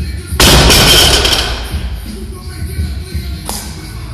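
Background music, broken about half a second in by a loud sudden burst of noise during a heavy barbell lift with bumper plates, which dies away over about a second; a single short knock follows near the end.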